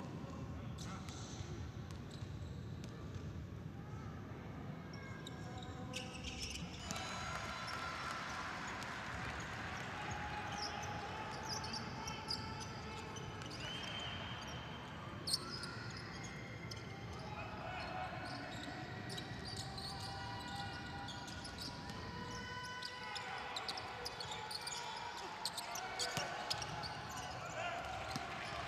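A basketball bouncing on a hardwood court during a game, with short knocks and players and coaches calling out over the low noise of the hall.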